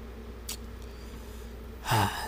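A man drawing in breath for a sigh near the end, over a steady low electrical hum, with one short sharp sound about half a second in.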